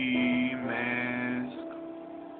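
Music: the held last note of a sung praise hymn, which stops about a second and a half in and leaves a fading tail.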